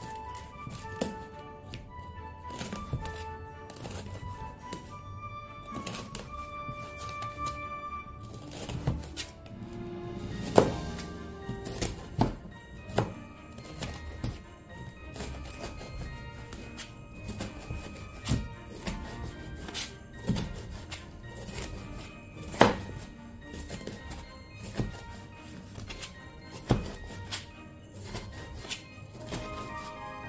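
Chef's knife cutting bell peppers into strips on a plastic cutting board, with irregular knocks of the blade on the board, the loudest a handful of sharp taps scattered through the middle. Background music with a beat plays underneath.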